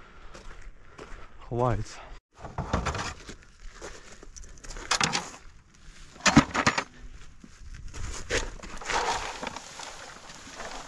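Bilberries being handled in plastic containers: several sharp knocks of a berry-picking comb and bucket, then a rustling rattle as berries are tipped from a bucket into a plastic crate near the end.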